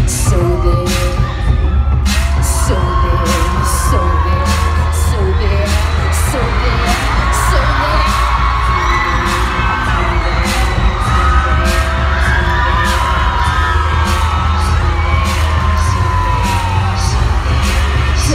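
Live pop music played loud through an arena sound system: deep bass, a steady drum beat about twice a second, and singing voices over it.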